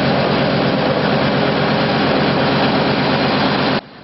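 Snowplow truck's diesel engine running under load as its front plow blade pushes snow, a loud steady rushing noise over a low engine pulse. It cuts off abruptly near the end.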